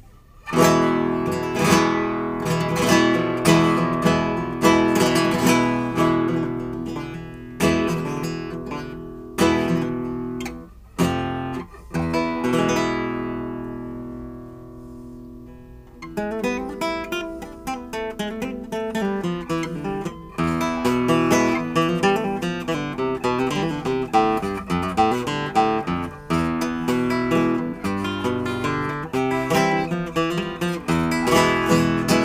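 A 1913 Antonio de Lorca classical guitar with a tornavoz played solo. It opens with strummed chords, then lets one chord ring and die away. About halfway through it moves into a quicker run of picked notes and arpeggios.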